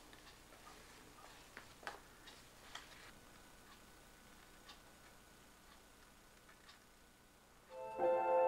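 Near silence with a few faint, scattered clicks and taps, most of them in the first three seconds. Near the end a sustained chord of background music comes in abruptly.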